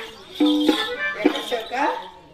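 A voice singing a Telugu street-drama song in short phrases, with instrumental accompaniment. A steady note is held briefly about half a second in.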